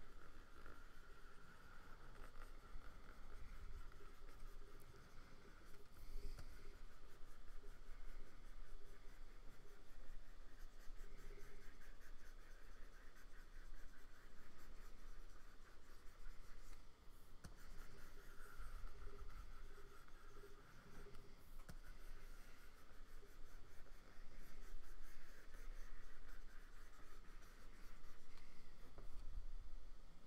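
Stylus scratching across the screen of a Wacom Cintiq pen display in quick, repeated strokes, faint and continuous.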